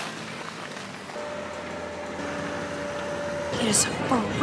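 Outdoor ice-rink ambience: a steady wash of crowd and city noise, with a held tone for about two seconds in the middle and voices coming in near the end.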